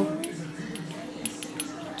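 A few light metallic clinks from a metal measuring spoon knocking against the oil bottle's metal pourer spout as oil is poured into it.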